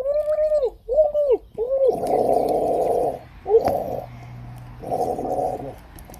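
A child's voice making Spinosaurus noises: three short, arching hoot-like calls, then a raspy gargling growl about two seconds in, a brief call, and another raspy growl near the end.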